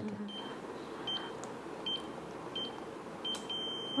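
Electronic keypad beeping as keys are pressed: four short high beeps roughly a second apart, then one longer beep near the end.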